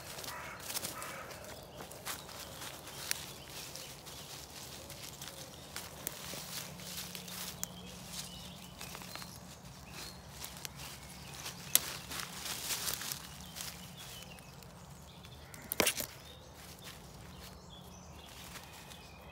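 Footsteps and rustling through woodland undergrowth and dry leaf litter, an uneven run of crackles and swishes with a couple of louder snaps, the loudest near the end.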